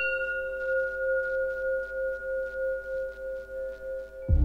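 A sustained, bell-like ringing tone, struck afresh just as it begins, its higher overtones dying away over the first second or so while the lower tones hold on with a slow wavering, about three pulses a second.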